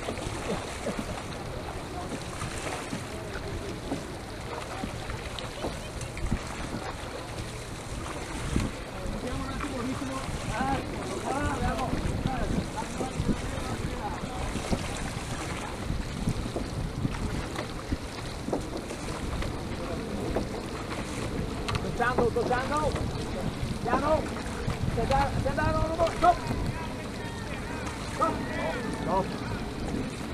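Wind rumbling on the microphone and water noise aboard a Venetian rowing boat under oar, with indistinct voices coming and going around the middle and through the last third.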